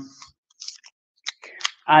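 Rolled newspaper rustling and crinkling in the hands as the paper tube is handled: a few short, faint scratchy sounds.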